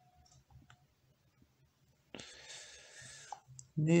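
A few faint clicks from a tablet's on-screen keyboard as a finger taps the keys, then a soft hiss lasting about a second, starting about two seconds in.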